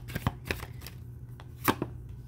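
Tarot cards being handled and dealt from the deck: a few short sharp clicks and taps of cards against each other and the deck, the loudest near the end.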